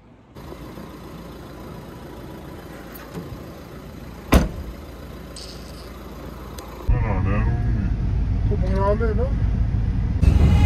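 Car being readied to leave: a steady outdoor background, then a single sharp slam a little over four seconds in, like a car door shutting. From about seven seconds a louder low rumble sets in with a voice over it.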